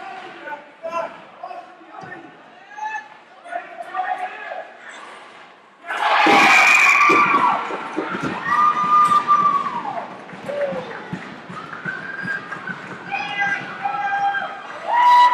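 Spectators at an ice hockey rink break into loud cheering and long drawn-out shouts about six seconds in, greeting a goal. Before that there is a quieter scatter of voices and game noise.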